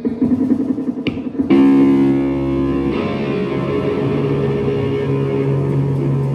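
Live band playing loud electric guitar and bass guitar through stage amps. About a second and a half in, a heavy chord is struck and left ringing over a held low bass note.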